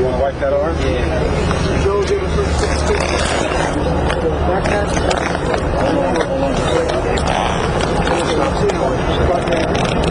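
Indistinct, overlapping voices that cannot be made out, over a steady low hum.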